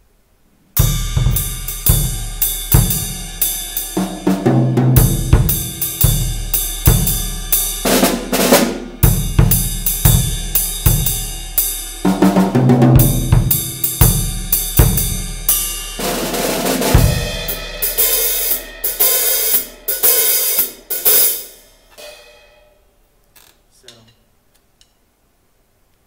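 Yamaha drum kit played solo: snare, toms, bass drum, hi-hat and cymbals in a continuous, busy pattern, starting about a second in. It stops about three-quarters of the way through with a last hit whose cymbal ring fades away.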